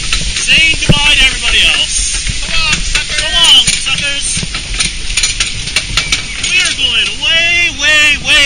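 Several people's voices calling out, rising and falling in pitch, over the steady rush of the log flume's running water, with scattered clicks and knocks from the ride.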